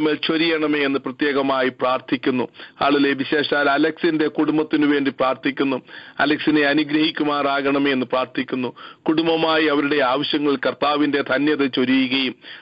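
A man speaking steadily, praying aloud in Malayalam, with the thin, narrow sound of a telephone line.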